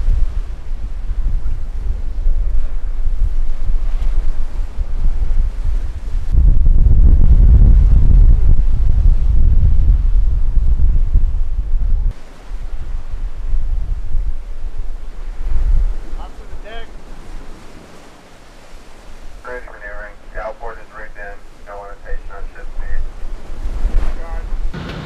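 Wind buffeting the microphone on a surfaced Virginia-class submarine's open bridge, over the rush of sea breaking around the bow. The wind rumble is heaviest from about six to twelve seconds in, then eases off.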